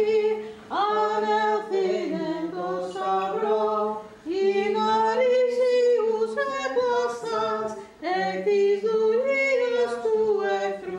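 Unaccompanied Greek Orthodox church chanting: a melody sung in phrases over a steadily held low drone note, with short breaks between phrases about four and eight seconds in.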